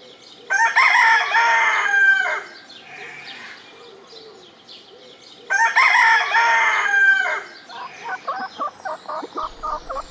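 A Westfälischer Totleger rooster crowing twice, each crow about two seconds long and about five seconds apart; the crows are the loudest sounds. Near the end comes a run of short, quickly repeated clucks.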